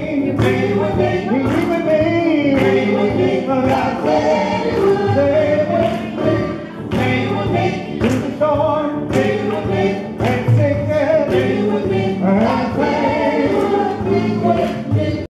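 A gospel vocal group sings in harmony through microphones, backed by a drum kit keeping a steady beat.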